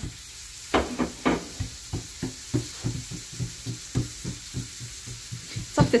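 Hands patting and pressing a thin sheet of oiled dough flat against a counter as it is stretched out, giving soft pats about three times a second, with a few louder slaps in the first second or so.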